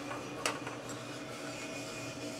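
Small gas-fired drum coffee roaster running mid-roast: the beans tumble in the turning drum over a steady machine hum, with one sharp click about half a second in. The beans are late in the drying stage, just before the Maillard reaction, with the flame turned fully up.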